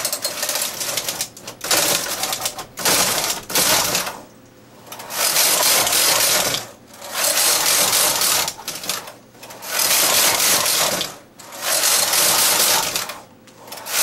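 Carriage of a bulky double-bed knitting machine, with its ribber, pushed back and forth across the needle beds to knit rows: a rattling, whirring pass of about one and a half to two seconds, repeated about six times with short pauses at each turn.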